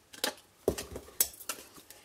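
Scissors snipping small wedges into patterned cardstock box flaps: a few sharp, separate snips and clicks, one with a duller knock, as the blades close and the scissors are set down on the mat.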